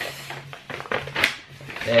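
A folded paper packing slip rustling and crinkling as it is unfolded and handled. There is an irregular run of crackles, busiest around the middle.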